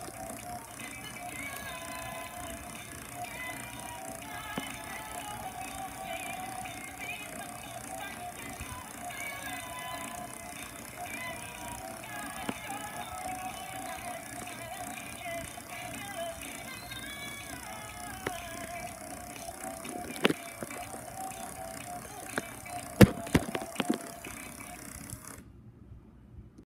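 Animated dancing mummy toy playing its built-in tune as it dances, with a few sharp knocks near the end. The tune cuts off suddenly just before the end.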